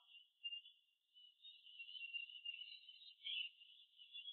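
Near silence in a gap of an isolated vocal track, with only a faint, thin high hiss left over.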